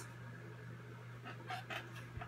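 A person's faint breathing, a few short breaths clustered about one and a half seconds in, over a low steady electrical hum.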